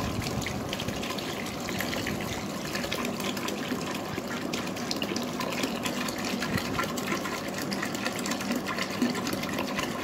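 Water pouring in a steady stream from a large plastic bottle into a big metal pot of milk and rice-flour mixture, splashing into the liquid as the pot fills.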